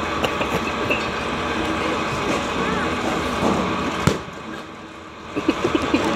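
Indistinct voices over steady outdoor background noise, with one sharp knock about four seconds in, after which the noise briefly drops before returning.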